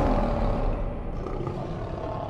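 Lion roar sound effect in a logo sting: one long roar that eases off a little after about a second.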